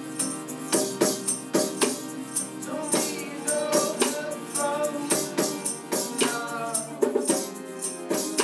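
A band playing live: strummed acoustic guitars with a steady tambourine and shaker beat and hand percussion, and voices singing over it.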